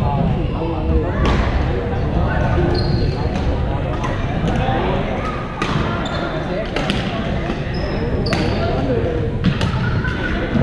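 Badminton rackets striking shuttlecocks in a reverberant sports hall: sharp cracks at irregular intervals, roughly one every second, with short sneaker squeaks on the court floor and players' voices throughout.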